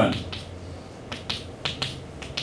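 Chalk tapping on a blackboard while numbers are written: a few short, sharp clicks, about four of them in the second half.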